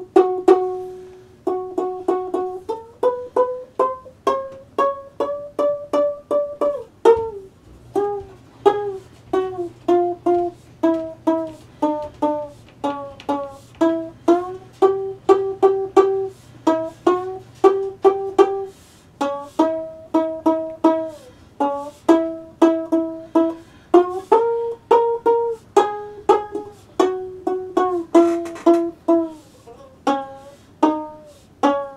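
One-string diddley bow played as a steady run of plucked twangy notes, a few a second, with the pitch sliding up and down along the string, including a long rising slide a few seconds in.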